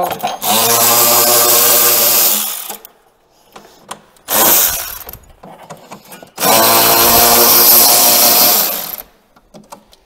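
Cordless electric ratchet motor whirring in three runs, a long one, a short one and another long one, as it backs out Torx fasteners holding a snowmobile front bumper.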